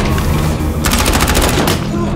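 A rapid burst of automatic gunfire, about a dozen shots in under a second, starting a little under a second in, over an orchestral-style film score.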